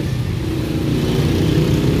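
Street traffic: motor vehicle engines running close by, a steady low engine sound with traffic noise.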